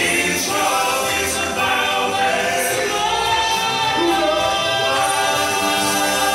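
Male gospel quartet singing in close four-part harmony into microphones, holding long sustained chords.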